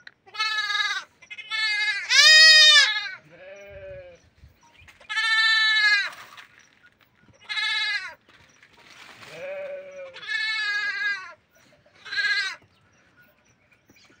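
Young goat kids bleating, about nine separate calls at differing pitches from more than one animal, the loudest about two and a half seconds in.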